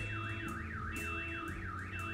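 An electronic alarm warbling, its pitch sweeping up and down evenly about four times a second, of the kind a car alarm makes.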